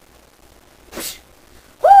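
Quiet room with one brief, breathy noisy burst about halfway through. Near the end a person starts a loud, drawn-out cry of "Oh".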